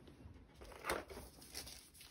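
Faint rustling of a thin plastic protective sleeve and cardboard box as a graphics tablet is handled and lifted out, with one slightly louder rustle about a second in.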